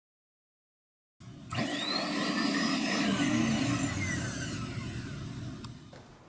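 Silence, then about a second in a loud rushing noise starts suddenly, with a low rumble and tones sliding up and down through it. It fades away near the end.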